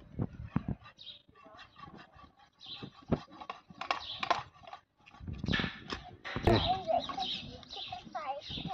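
Hand-operated floor pump being worked in repeated strokes, about one a second, each with a hiss of air, as it inflates a bicycle tyre that had gone low.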